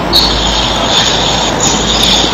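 A loud steady hiss with a high-pitched whine that comes in just after the start and holds steady.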